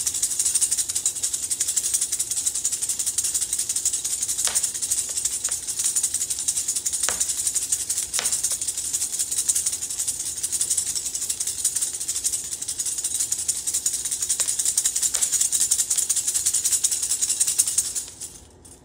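A sistrum shaken rapidly and without a break: a bright, metallic jingling shimmer, with a few sharper clicks in among it.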